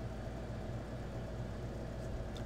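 Room tone: a steady low hum with faint background noise.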